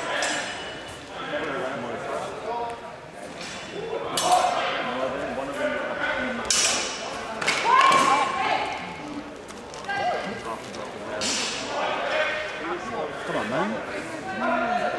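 Steel longsword blades clashing a few times during sparring, each clash ringing and echoing through a large hall, with footfalls and voices between.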